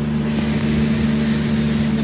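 A steady low machine hum with a rushing hiss over it; the hiss grows brighter about half a second in.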